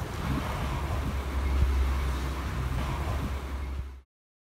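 Steady low rumble of wind buffeting a handheld phone's microphone outdoors, cutting off suddenly at the end.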